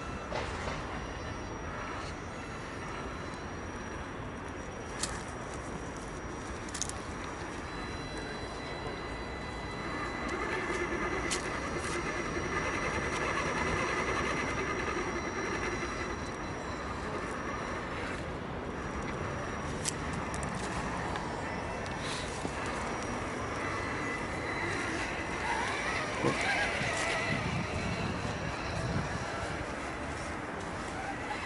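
Electric motor and geared drivetrain of a scale RC crawler truck whining as it creeps over leaves and grass, the whine swelling as it is driven harder about a third of the way in and again near the end, with a few sharp clicks.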